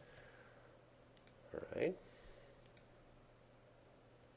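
A few faint, scattered computer mouse clicks as menus are opened and items chosen, over a low steady hum.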